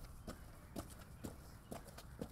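Squad of police marching in step, their boots striking the pavement together about twice a second in a steady rhythm.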